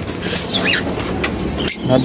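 A hand rummaging inside a wire pigeon cage: light rustles and clicks of wire and birds stirring, with a brief high chirp about half a second in.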